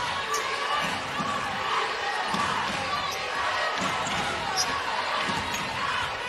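A basketball being dribbled on a hardwood court, a steady thud a little more often than once a second, over the murmur of an arena crowd.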